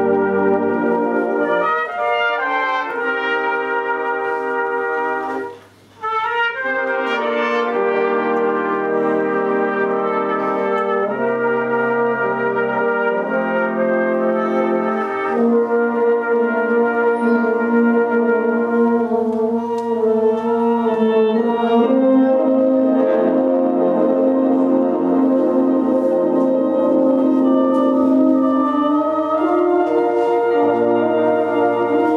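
Full brass band, with trombones and tubas among its sections, playing held chords. A short break about six seconds in, then the band comes back in.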